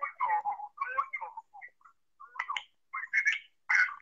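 A thin voice coming through a video call, broken into short choppy fragments with gaps between them, as the call connection breaks up.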